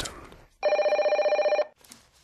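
A desk telephone ringing once: a single steady, fluttering ring about a second long that starts about half a second in.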